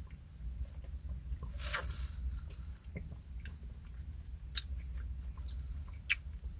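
A person drinking through a straw and chewing strawberry popping boba, with a few soft, short mouth clicks and pops scattered through it over a low steady hum.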